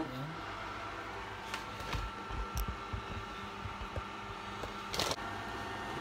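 A steady appliance or fan hum in a small room, with a few soft handling thumps about two to three seconds in and a single sharp click about five seconds in.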